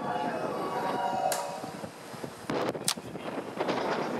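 Station platform departure melody cut off abruptly early on, followed by a few sharp, short sounds about two and a half to three seconds in.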